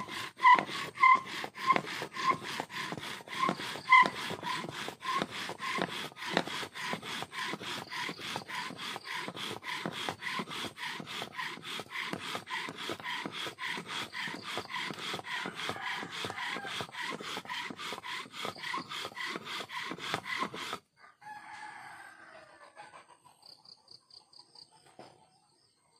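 Bow drill: a wooden spindle spun by a bow and string, grinding into a wooden fire board in fast back-and-forth rasping strokes, several a second, with squeaks on the strokes in the first few seconds. The friction is grinding hot dust to form an ember. The drilling stops suddenly near the end.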